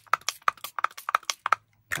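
Handheld trigger spray bottle squeezed rapidly over damp linen: a quick, even run of clicks and short spritzes, about six a second, that stops a little before the end.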